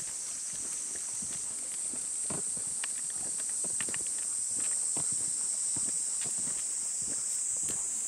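Footsteps of a person walking on a paved path, with two golden retrievers trotting alongside: irregular steps throughout. Behind them a steady high-pitched drone of summer insects.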